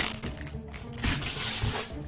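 Packing tape being torn off a cardboard box, with a short rip near the start and a longer ripping stretch from about a second in, over a steady background music bed.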